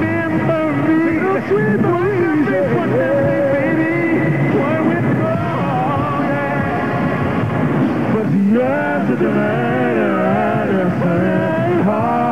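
Male vocal group singing live into microphones, backed by a marching band's brass.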